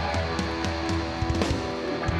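Live rock band playing: sustained electric guitar chords over a drum kit, with repeated cymbal and drum hits.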